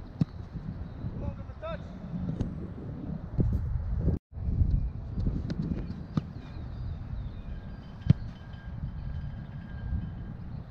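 A soccer ball being kicked on artificial turf: several sharp thuds spaced a couple of seconds apart, the loudest about eight seconds in, over a steady low rumble of wind and movement on the microphone.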